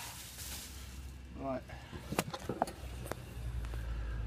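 A man's short murmur, then a few light clicks and knocks.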